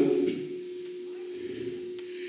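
A man's amplified speech trails off in the first half second, then a pause filled by a steady low hum with a faint high whine, running unchanged from the microphone's sound system.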